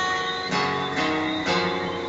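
Guitar strumming chords, about two strums a second, each chord ringing on into the next.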